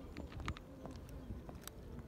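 Kittens crunching dry cat kibble from a plastic tub: a scatter of irregular sharp clicks. Under them runs a faint, intermittent low buzz.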